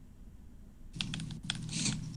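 Quiet for about a second, then a run of soft, quick clicks and taps, like keys being pressed.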